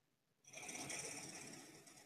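A faint breath near the microphone, starting about half a second in and fading away over a second and a half.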